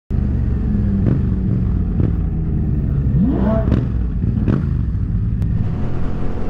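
Vehicle engines running in slow traffic, a steady low drone, with one engine revving up so its pitch climbs steeply about three seconds in. A few short clicks sound over it.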